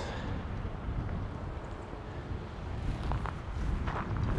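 Low steady wind rumble on the microphone outdoors, with a few faint footsteps on dry ground in the last second.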